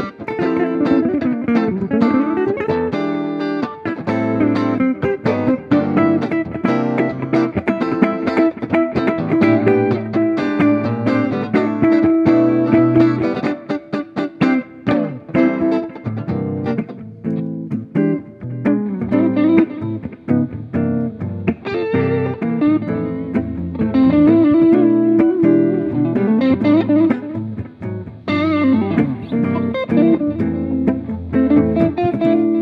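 Guitar duet: an archtop hollow-body jazz guitar and a solid-body electric guitar playing a piece together, with busy, quickly changing note lines throughout.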